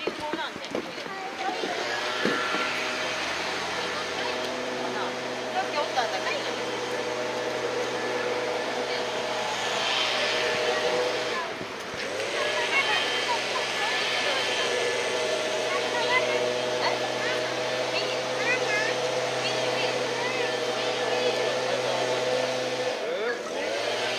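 A steady machine hum made of several held tones, dropping out briefly about halfway through, with scattered voices of visitors and children around it.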